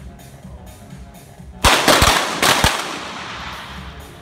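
A quick volley of .22 sport pistol shots from several shooters firing together, about five cracks within a second, with a reverberant tail dying away in the range hall.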